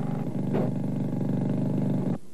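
A loud motor-driven machine running steadily at a constant pitch.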